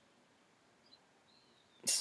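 Near silence: quiet room tone with one faint click about a second in, then a woman's voice starts just before the end.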